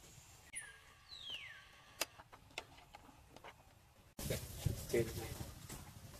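A single high call gliding down in pitch about half a second in, followed by a few sharp clicks; a little after the middle the background suddenly gets louder, with short low calls over it.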